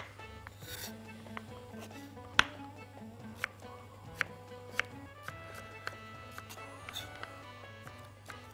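Chef's knife dicing carrots on a wooden cutting board: scattered single knocks of the blade on the board, the strongest about two and a half seconds in, under soft background music.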